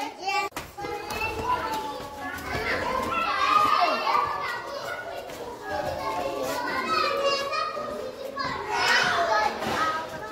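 A group of young children chattering and calling out over one another, many small voices at once.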